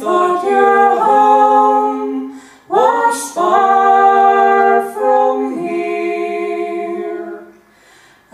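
A man and a woman singing long held notes together in harmony, in two sustained phrases; the second phrase fades out near the end.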